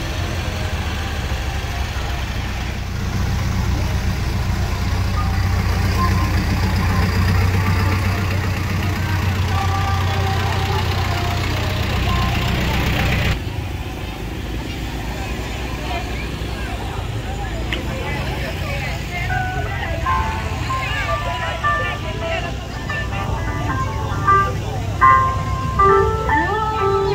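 A vehicle engine running close by with a steady low hum, amid voices. About halfway through it cuts off suddenly, and voices and a melodic tune from loudspeakers follow, the tune growing louder near the end.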